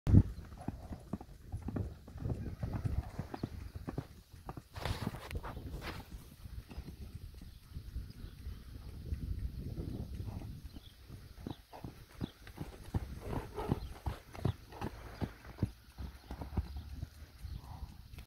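A young horse's hoofbeats on a sand arena floor, a long run of dull, uneven thuds as it moves at speed. A brief rushing noise comes about five seconds in.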